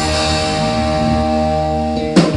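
Live electric guitar holding a sustained chord that rings steadily, its notes shifting slightly about halfway through.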